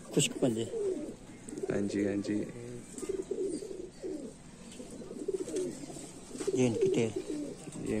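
Domestic pigeons cooing repeatedly in a loft: low, throaty calls that come again and again, with longer held coos about two seconds in and near the end.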